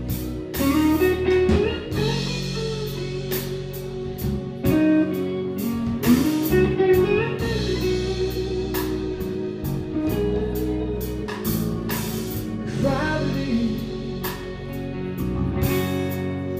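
Live blues-rock band playing a slow song: electric guitar lead lines with notes that slide up and down, over bass guitar, drum kit and keyboards.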